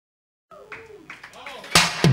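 After a brief silence, faint voices in a live room, then a single loud drum hit near the end as a rock band kicks into a song.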